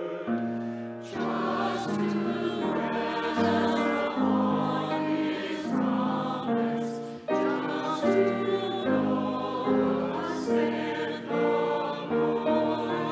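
Mixed church choir of men's and women's voices singing a slow piece, its chords held and changing about every second.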